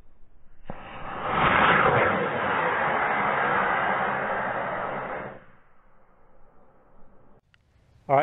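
Model rocket launch: an Estes black-powder motor ignites with a sudden start about a second in and burns with a loud rushing hiss, which drops off after about five seconds into a faint trailing noise.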